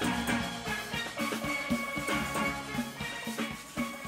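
Steel band playing: many steel pans struck in a quick, even rhythm, their ringing notes layered over lower bass pans.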